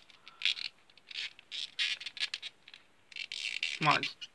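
Handling noise: a string of short, light scrapes and rustles as a plastic action figure is picked up and handled.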